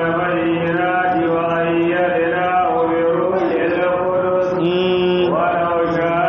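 A man's voice chanting Qur'anic Arabic in a slow, melodic tajwid recitation, holding long drawn-out notes with gliding ornaments.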